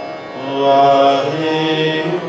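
Sikh kirtan simran: voices chanting in held notes over sustained harmonium chords, swelling about half a second in. The tabla is silent for these seconds.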